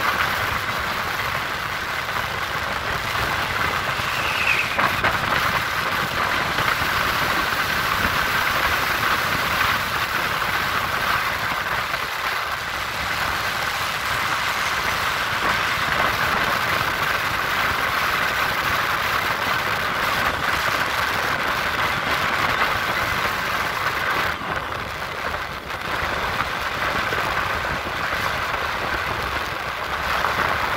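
Steady running noise of a road vehicle in motion, heard from on board: engine, tyre and wind noise with no sharp events.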